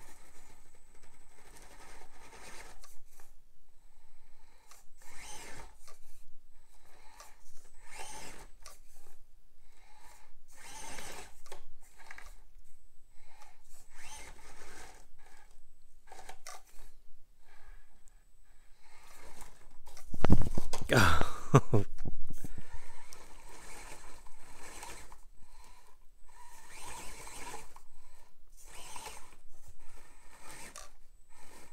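Axial SCX24 micro RC crawler climbing a steep foam rock chute: its small electric motor and gears whir in short bursts of throttle, with tires scraping and crunching on the rock. A longer, louder burst with rising and falling pitch comes about two-thirds of the way through.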